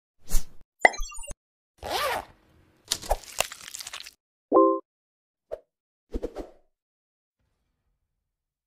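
A string of short sound effects for an animated title intro: quick hits with falling blips in the first second, a swish about two seconds in, a burst of crackly clicks, a brief pitched tone about four and a half seconds in, then a few small clicks, each separated by silence.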